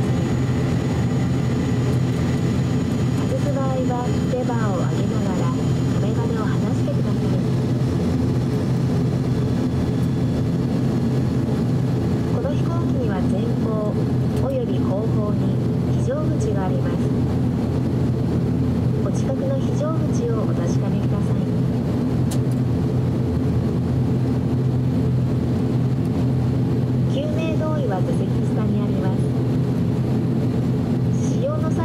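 The ATR 42-600's Pratt & Whitney PW127 turboprop engine idling with its propeller turning slowly, heard inside the cabin as a loud, steady drone with a low hum. Faint voices come through over it.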